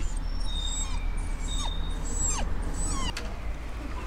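Steady low rumble of busy road traffic, with a string of short, thin, high whines and falling chirps over it.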